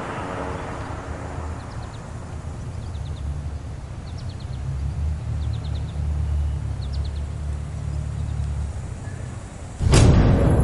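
Outdoor ambience: a steady low rumble of distant traffic, with small birds chirping in short runs of three or four quick notes every second or so. It ends in a sudden loud hit.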